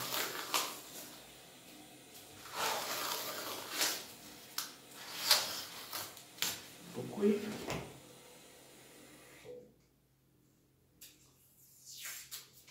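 Paper adhesive tape being pulled off the roll in several short, sharp rips and wrapped around a cloth bundle.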